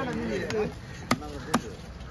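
Cleaver chopping through fish onto a wooden block, four sharp strikes about half a second apart.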